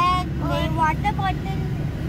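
Steady low rumble of a car driving, heard from inside the cabin, with a child's high voice talking in short phrases over it.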